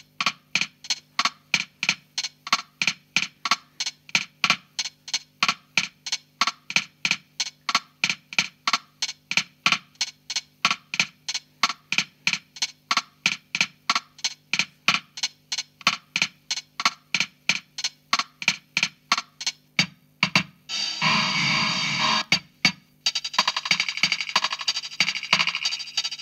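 Drum-machine bossa nova rhythm from a Casio CZ-230S playing through an Alesis Midiverb 4 effects processor: an even pattern of about three short hits a second. About three seconds before the end the pattern gives way to a dense, hissy wash that breaks off briefly and starts again.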